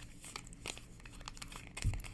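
Small scattered clicks and crinkling from handling a liquid eyeshadow tube and its applicator while trying to get the product out, with a low thump near the end.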